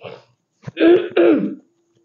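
A woman clears her throat twice in quick succession, about a second in, each time with a short voiced rasp that drops in pitch. It is the sign of a sore throat.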